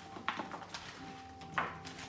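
Hands tossing and rubbing raw potato slices with herbs in a metal roasting tray: faint soft squelches and light clicks of potato against the tray, with two short, slightly louder knocks.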